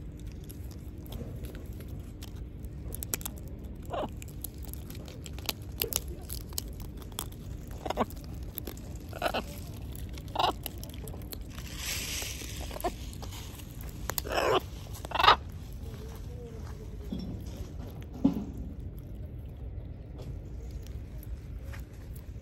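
Blue-and-gold macaws cracking almond and walnut shells with their beaks and chewing the nuts: scattered sharp cracks and crunches, with two louder short sounds about two-thirds of the way through.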